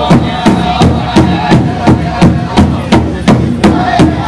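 Pow wow drum group playing: a large powwow drum struck in unison in a steady beat of about three strokes a second, with the singers' high voices over it.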